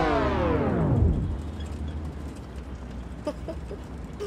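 A comic soundtrack effect: a sustained pitched sound sliding steadily down in pitch and fading out about a second in, over a low steady hum. After that it is quieter, with a few faint clicks.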